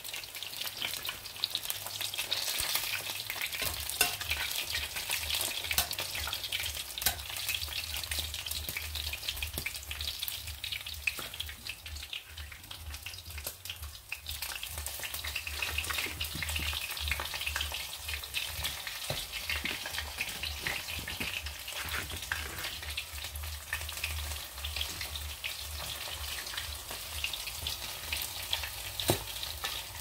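Fish fingers shallow-frying in hot oil in a pan: a steady sizzle with frequent small crackles. A low hum runs underneath from a few seconds in.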